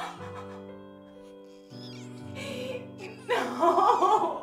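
Music score of long held notes. Near the end a woman lets out a loud, strained cry of pain, in labour.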